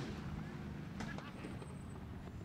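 Faint low rumble of dirt-track hobby stock car engines idling as the cars roll to a stop, with a few faint clicks about a second in.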